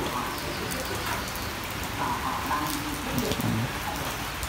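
Steady rain falling on the leaves of a garden bonsai.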